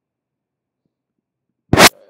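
Near silence, then one sudden, very loud burst of noise lasting about a fifth of a second, close to the end.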